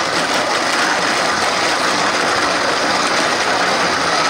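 Vitamix high-power blender motor running steadily, churning ice with creamer and agave into ice cream while a tamper pushes the mixture down into the blades.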